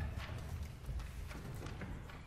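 Quiet concert-hall noise in a pause between pieces: scattered, irregular knocks and shuffles, like movement on a wooden stage and in the audience, over a low rumble.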